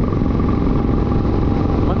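Motorcycle riding at a steady cruising speed, its engine running under a constant rush of wind on the microphone.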